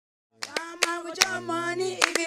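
Music: voices singing long held notes over sharp hand claps, starting about a third of a second in.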